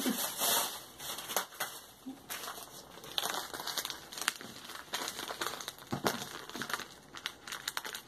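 Plastic padded mailer being handled and crinkled, with irregular sharp crackles of the packaging through the whole stretch and the loudest rustling right at the start.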